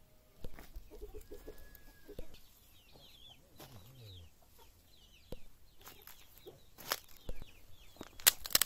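Chicken clucking in short bursts, with small birds chirping high up and a few sharp knocks and rustles, the loudest about half a second in and near the end.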